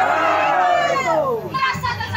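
A long, loud shouted call in a high voice, its pitch sliding steadily down over about a second and a half, followed by more talking.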